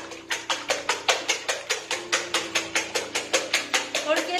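A wire whisk beating eggs hard in a stainless steel bowl, the wires clicking against the metal in a quick, steady rhythm of about six or seven strokes a second. The eggs are being beaten to work air into them so the crust rises.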